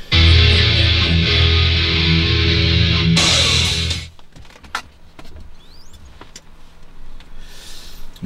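Loud music from the car's stereo head unit, which drops away sharply about four seconds in, leaving faint clicks and handling noise.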